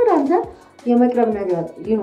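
Only speech: a woman talking in Amharic, with a short pause about half a second in.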